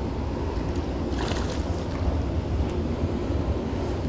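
Steady rush of water flowing through a concrete spillway, with wind rumbling on the microphone; the rush swells briefly about a second in.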